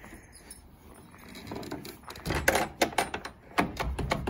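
Wooden stable half-door pushed shut and its metal slide bolt fastened: a run of sharp knocks and metallic clicks in the second half, after a quieter first two seconds.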